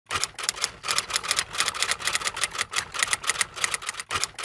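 Typing sound effect: a fast, even run of key clicks, about seven a second, keeping time with text being typed onto the screen.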